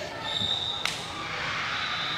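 Reverberant gym ambience between volleyball rallies: a faint steady high tone, then a single sharp smack just under a second in.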